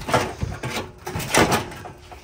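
Scraping and rattling of a rusty sheet-metal body panel being handled and pulled aside. There are two louder bursts, one just after the start and the loudest about a second and a half in.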